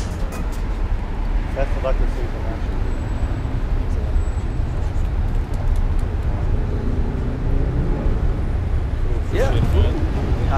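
Steady low rumble of city street traffic, with faint voices of people standing close by.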